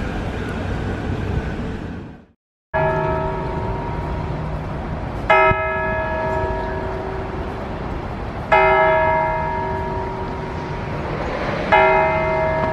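A tower bell struck three times, about three seconds apart, each strike ringing out and slowly fading, over steady city background noise. Before the strikes, city noise cuts out briefly.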